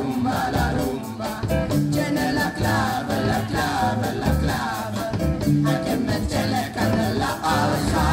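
Live student band playing a Latin-rock groove, with several voices singing into handheld microphones over drum kit, congas, bass and electric guitar.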